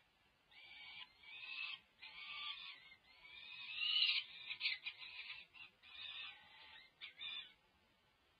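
Peregrine falcon chicks giving a run of high food-begging calls, about one a second, some rising in pitch. The calls are loudest around the middle, with a few short clipped notes after it, and they stop shortly before the end.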